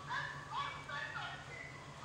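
A faint voice whose pitch rises and falls, over a low steady hum.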